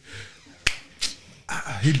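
A single sharp click about two thirds of a second in, followed by a fainter click about a second in.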